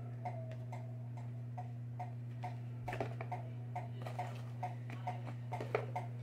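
Regular, steady ticking at about two ticks a second over a low, constant hum, with a few sharper clicks and rustles of a cardboard perfume box being opened, around three seconds in and again near the end.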